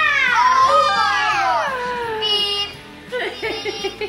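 A child's long excited shout, its pitch falling over about two seconds, over background music; children's voices follow near the end.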